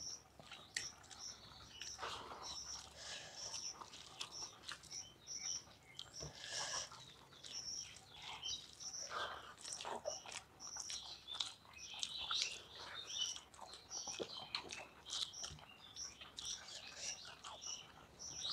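Close-up chewing and lip-smacking of people eating rice and curry with their fingers. Behind it, a bird chirps one short high note over and over, about twice a second.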